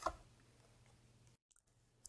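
One short soft click of tarot cards being handled at the very start, then near silence with a faint low hum.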